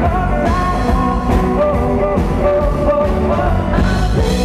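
Live rock band playing: electric guitars over drums, with a singer's voice in the mix.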